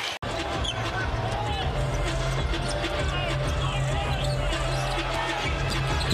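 Live basketball game sound: a ball being dribbled on a hardwood court, with sneakers squeaking, crowd noise and arena music with a steady bass note under it. The bass note stops shortly before the end.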